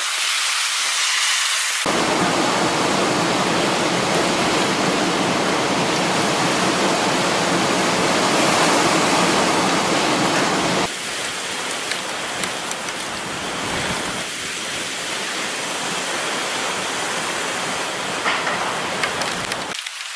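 Hurricane wind and driving rain, a dense, steady rushing noise. It becomes louder and fuller about two seconds in and eases somewhat about eleven seconds in.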